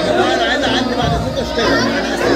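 Several voices talking at once over music playing in the background.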